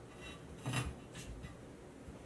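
Faint metallic rubbing and scraping of EMT conduit in a hand bender's shoe as it is pulled down to a 45-degree bend: a few short scrapes, the loudest a little under a second in.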